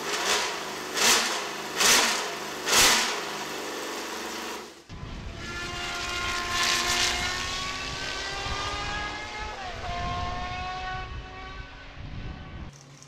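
Matra MS670B's 3-litre V12 revved in four quick sharp throttle blips. After a cut, the car runs at speed with a piercing, many-toned exhaust note that holds steady, drops in pitch once about ten seconds in, and then fades.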